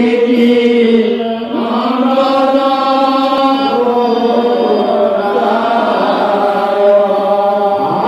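A group of men chanting Assamese Vaishnavite naam-kirtan together, holding long drawn-out notes that shift pitch about one and a half seconds in.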